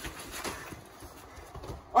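Scuffling in a staged fight: a handful of irregular thumps and knocks of blows, feet and bodies.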